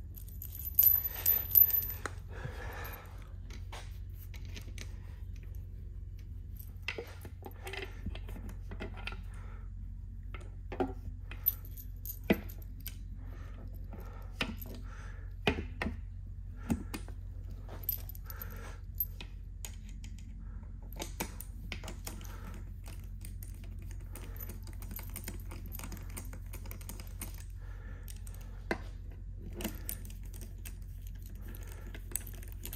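Loose steel valve cover bolts clinking and rattling as they are handled and threaded in by hand, with a burst of clatter about a second in and scattered single clinks after. A steady low hum runs underneath.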